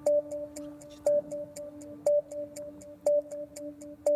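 Countdown music: a steady held tone with a ticking beat, a louder pip once each second and lighter ticks about four times a second between them, timed to a broadcast countdown clock.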